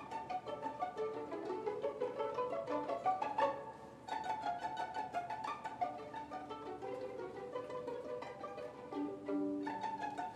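Live chamber orchestra strings playing, with the violin featured in quick notes. A run climbs in pitch to a peak about three and a half seconds in, and the music dips briefly near four seconds before going on.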